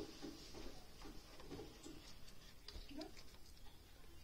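Faint handling of a smartphone's paperboard packaging: a few light clicks and rustles as the box and its inner cardboard tray are handled.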